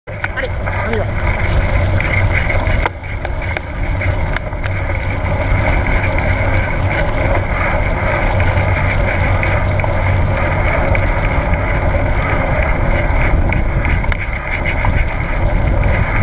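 A mountain bike running fast over a leaf-strewn dirt forest track: a steady rush of wind on the bike-mounted microphone over the rumble of the tyres, with scattered small rattles and clicks from the bike. There is a brief drop in level about three seconds in.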